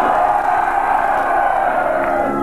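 Live power-metal concert sound: one long held note that rises slightly and falls back, over the band and crowd.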